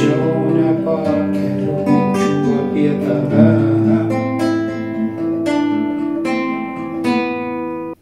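Nylon-string classical guitar fingerpicked as arpeggios, a bass line under ringing chord tones with a melody line picked out on top. The playing cuts off abruptly at the end.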